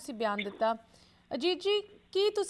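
A woman speaking in two short phrases with a brief pause between them.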